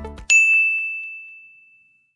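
A single bright chime sound effect for a logo reveal: one high ding that strikes sharply and rings out, fading away over about a second and a half.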